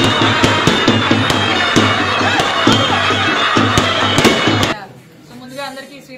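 Loud street celebration music: drums beating about three times a second under a droning, shrill wind instrument, with a crowd. It cuts off suddenly about three-quarters of the way through.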